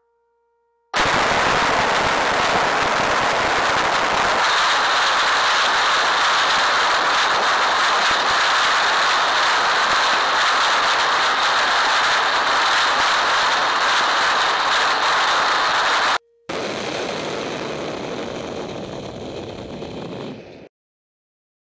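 Rocket motors on a track-mounted test vehicle ignite suddenly about a second in and fire with a loud, steady, crackling rush for about fifteen seconds. The sound cuts off abruptly, then a quieter stretch of the same rushing noise fades away near the end.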